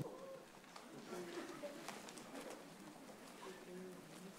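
Faint room tone of a meeting hall, with distant, indistinct murmuring voices and a few light clicks.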